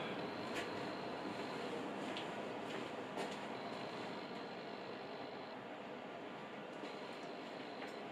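Low, steady background noise with a few faint clicks and knocks; the angle grinder is not running.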